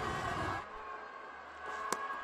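Stadium crowd noise that drops away about half a second in, then a single sharp knock near the end as the cricket ball reaches the bat and the wicketkeeper's gloves.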